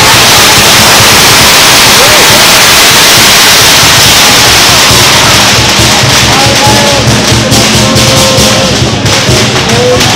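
Dragon-dance percussion: drums with cymbals clashing continuously, loud. The dense cymbal wash thins after about six seconds into separate strikes.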